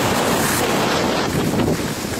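Steady wind noise buffeting the microphone of a skier's camera during a downhill run, mixed with the hiss of skis sliding over packed snow.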